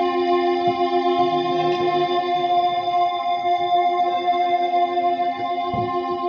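Ambient organ music from a K.1 organ run through looping and chorus effects: a steady chord of held, droning notes that does not change, with a soft low thump near the end.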